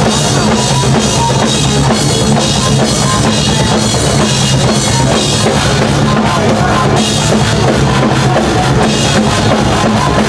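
Thrash metal band playing live and loud: distorted electric guitar and bass over a drum kit with dense, rapid drum hits.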